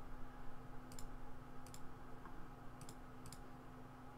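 Computer mouse clicking: four quick double clicks, each a press and release, spread over a couple of seconds, over a faint steady hum.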